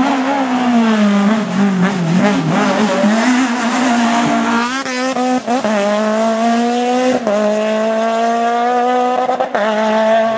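Small hatchback rally car's engine at high revs, passing and then pulling away. The pitch falls and wavers as it slows for a bend, then climbs steadily through the gears, with a short break at each upshift about five, seven and nine and a half seconds in.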